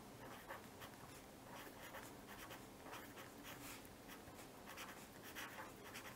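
A felt-tip pen writing on paper: faint, short strokes that come at uneven intervals as words are lettered.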